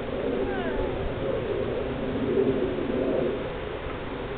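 A drawn-out animal call lasting about three seconds, loudest a little past the middle, with a few faint chirps near the start.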